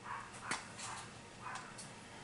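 A dog barking faintly in a few short barks, the sharpest about half a second in.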